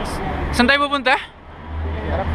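Steady low rumble of idling taxis and street traffic at the kerb, with a short spoken phrase about half a second in.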